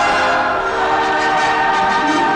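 Orchestral music with brass holding loud sustained chords, shifting to a new chord about halfway through.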